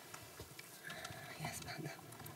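Faint whispered or low-voiced speech, off the microphone, strongest in the second half.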